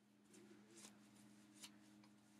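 A few faint, brief scratchy strokes of a cheap comb raking through wet, shampoo-soaked hair, with a steady faint hum underneath.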